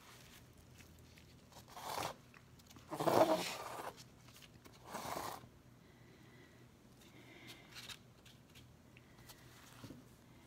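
A small stretched canvas being slid and turned on a cardboard-covered work table: three short scraping sounds, the middle one the loudest and longest, followed by a few faint small clicks.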